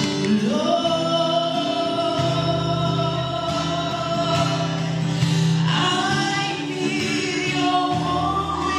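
A woman singing a slow song into a microphone over backing music. She holds one long note for about five seconds, then moves into a new phrase near the end.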